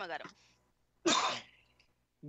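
A spoken word ends, then a person gives one short cough about a second in.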